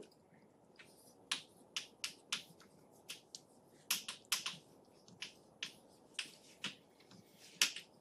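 Chalk writing on a chalkboard, heard faintly: a quick, irregular string of short, sharp taps and scratches as each stroke is made.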